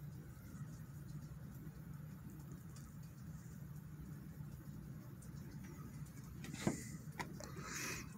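Quiet kitchen room tone with a faint low hum. A few faint clicks and knocks come near the end as spice shaker jars are handled over the roasting pan.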